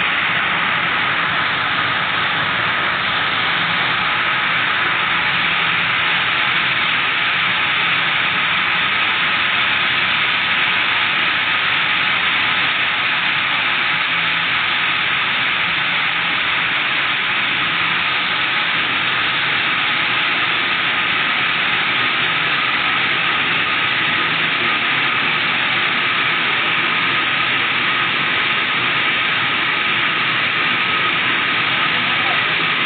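Rows of yarn-twisting machines running at speed, many spindles at once: a loud, steady hissing whir that never changes.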